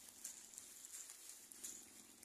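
Near silence: a faint steady hiss with a few faint scattered ticks, and a faint low murmur near the end.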